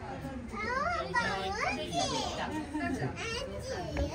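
Children's voices chattering and calling out, mixed with other people talking.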